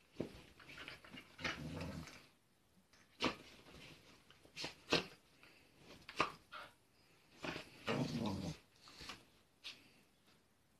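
Small dog burrowing under a bedsheet: the sheet rustles and the paws scratch in short sharp bursts, with a low growl about a second and a half in and another near the end.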